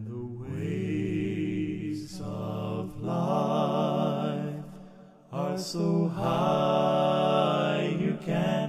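A man singing a slow hymn line in two long phrases, holding notes with vibrato, with his own voice layered in harmony.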